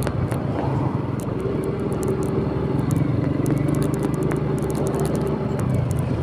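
Small motor scooter engine running steadily while being ridden, heard from the rider's seat, with scattered clicks over it.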